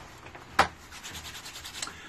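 Hands rubbing together, a quick run of dry scratchy strokes in the second half, after a single sharp tap a little past half a second in.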